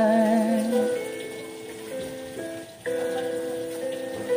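A man's held sung note, wavering with vibrato, ends about a second in. An instrumental backing track carries on alone with sustained chords that change every second or so.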